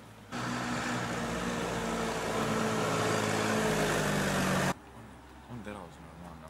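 A tractor engine running as the tractor drives along the road pulling a large farm machine, growing slowly louder as it comes closer. The sound starts and stops abruptly.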